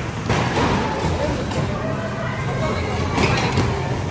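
Electric bumper cars running around a dodgem arena: a steady rumble and hum with a few knocks a little after three seconds in, and riders' voices underneath.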